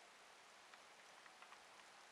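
Near silence: a faint steady outdoor hiss with a few very faint ticks.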